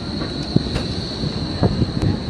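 Tram running on street track with a steady high wheel squeal over a low rumble, and a few sharp knocks.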